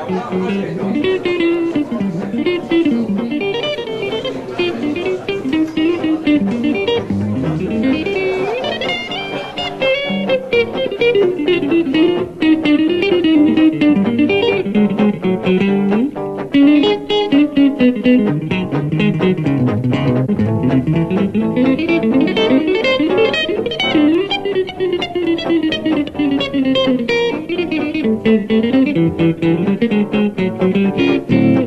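Electric archtop guitar playing a fast single-note jazz solo, in quick runs that rise and fall in pitch.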